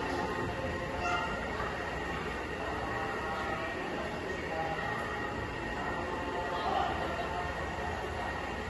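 Indistinct voices, faint and broken, over a steady background hum.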